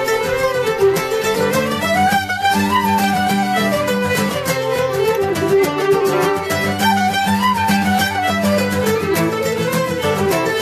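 Acoustic string band jam: several fiddles play a traditional tune together, the melody rising and falling, over steadily strummed guitar and mandolin chords.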